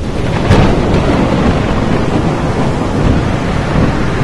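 Thunderstorm sound effect: steady heavy rain with rumbling thunder and a sharp crack of thunder about half a second in.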